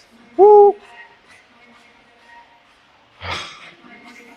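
A man's short, loud, high "hoo" shout about half a second in, a release of effort at the end of a set of seated calf raises. A brief breathy exhale follows near the end.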